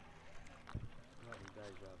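People talking on the shore, the voices not close to the microphone, with a single short, low thump a little under a second in.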